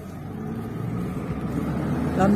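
Car road and engine noise heard from inside the cabin while driving through a road tunnel, a steady low rumble that grows louder.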